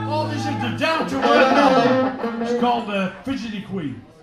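Live rock band playing: a held note ends about a second in, then a voice carries on over electric guitar, with some sliding pitches near the end.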